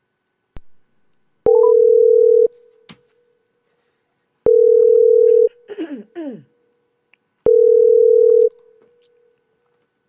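Telephone ringback tone on an outgoing call: three steady one-second tones about three seconds apart while the far end rings, with a click just before the first ring. A brief falling voice-like sound comes between the second and third rings.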